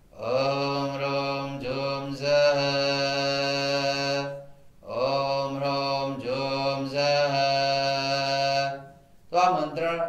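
A man chanting a Hindu mantra in long, held tones: two drawn-out phrases of about four seconds each, each opening with a short rise in pitch, then a shorter vocal phrase near the end.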